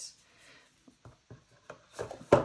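Faint handling of a tarot deck: cards rubbing and tapping against each other in the hands, with a few soft clicks in the second half.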